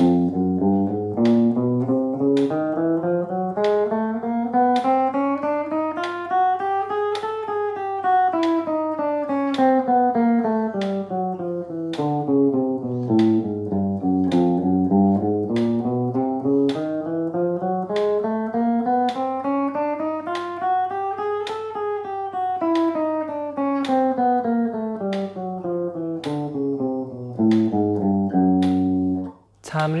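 Yamaha Pacifica electric guitar playing a slow finger-coordination exercise, four notes to each beat in a 1-2-3-4 fingering pattern, climbing in pitch across the strings, coming back down, then repeating the climb and descent. A metronome ticks steadily under the notes. The playing stops abruptly just before the end.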